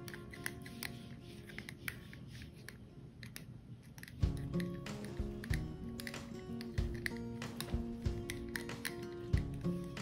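A plastic spoon scraping and tapping inside a small plastic cup as soft food paste is mashed flat, in scattered quick clicks. Background music plays under it, coming in more strongly about four seconds in.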